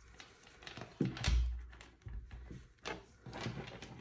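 Handling noise as a moss-covered wreath is lifted and moved on a wooden tabletop: a soft, deep thump about a second in, then a few faint clicks and rustles.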